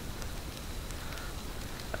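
Quiet woodland ambience: a faint, steady hiss with a few soft ticks.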